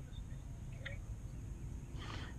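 Quiet lakeside ambience: a steady low rumble with a faint, short bird chirp about a second in.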